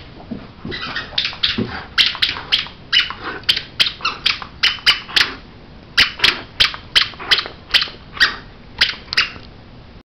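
A greyhound biting down repeatedly on a plush squeaky toy: a quick run of short, sharp squeaks, about two or three a second, with a brief pause around the middle.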